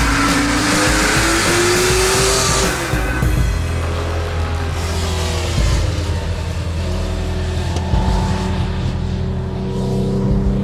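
A Porsche's engine accelerating, its note rising for about three seconds and then breaking off, followed by steadier running at a lower pitch, with music underneath.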